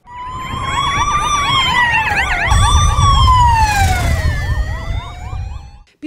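Emergency-vehicle sirens on escort motorcycles, loud: a slow wail rising and falling in pitch twice, overlaid with a fast yelp sweeping about four times a second, over a low engine rumble. The sirens cut off just before the end.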